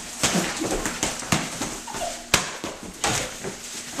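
A rubber soccer ball being kicked and bouncing on a hard tiled floor: a string of sharp knocks, the loudest a little past halfway, with brief voice sounds in between.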